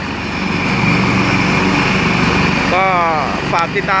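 AgustaWestland AW189 helicopter running on the ground with its main rotor turning: a steady turbine whine over a fast, even beat from the rotor.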